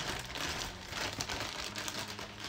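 Clear plastic bag crinkling as a device is handled and pulled out of it, a soft, irregular crackle.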